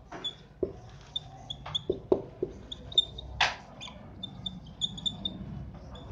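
Whiteboard marker writing on a whiteboard: short high squeaks with scattered brief taps and scratchy strokes as the letters are drawn.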